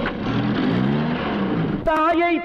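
A car engine revving, its pitch rising and then falling, over a rushing noise.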